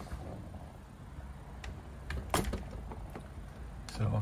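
A door being pushed shut: a few light clicks and knocks, the sharpest about two and a half seconds in and another just before the end, over a low steady rumble.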